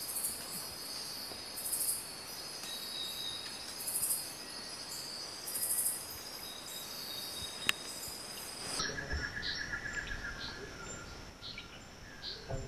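Night rainforest insect chorus: a steady high-pitched buzzing, with a louder pulsing call about every two seconds. About nine seconds in it cuts to a quieter forest ambience with bird chirps and a short trill.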